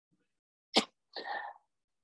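A person's sudden, sharp, sneeze-like burst about three quarters of a second in, followed by a softer breathy exhale.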